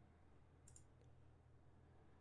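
Near silence with a brief, faint computer mouse click about two-thirds of a second in, followed by a smaller tick.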